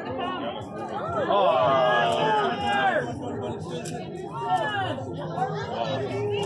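People talking and chattering close by, with one voice loudest for about two seconds starting a second in.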